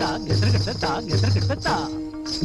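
Indian classical-style instrumental film music: a held string drone, low drum strokes a little under once a second, gliding plucked-string phrases and a steady high ringing.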